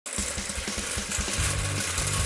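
Steady hiss of a kick scooter's small wheels rolling on asphalt, over music whose quick low pulses give way to a steady bass line about two-thirds of the way in.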